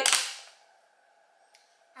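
Clear plastic clamshell lid of a sushi tray crackling briefly in the first half second as it is handled, then near silence with one faint tick.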